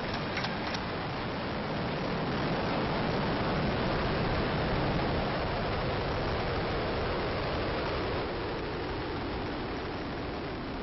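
Ares I-X's four-segment solid rocket motor burning during ascent: a steady, dense rushing noise, swelling slightly in the middle and easing a little near the end.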